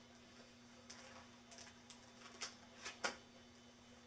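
Pages of a scrapbook photo album being turned and handled on a tabletop: a run of short rustles and taps, the loudest about three seconds in.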